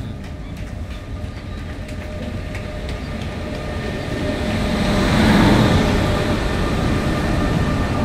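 WAP-5 electric locomotive hauling a passenger express into a station: a rumble that builds as the locomotive draws near, is loudest as it passes close about five seconds in, then carries on more steadily as the coaches roll by.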